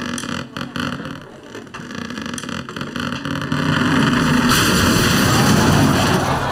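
A ceiling giving way under the weight of a bath after its supporting joist has been cut out: cracking and creaking at first, then a rumble that swells from about halfway, with a rushing hiss of falling debris joining near the end.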